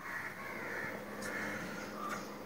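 A bird calling faintly in two drawn-out, harsh calls, one in each half.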